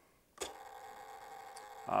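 A single sharp click shortly after a brief dropout, then faint steady room tone with a low electrical hum.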